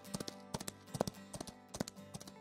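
Faint clip-clop of horse hooves, a sound effect of short separate clicks, over quiet background music.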